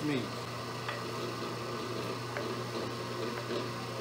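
Electric meat grinder's motor running steadily while its auger pushes the seasoned meat through a stuffing tube into a salami casing, with a few faint clicks.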